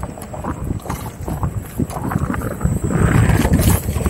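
Wind buffeting the microphone of a camera carried on a moving electric unicycle, an uneven low rumble that grows louder in the last second.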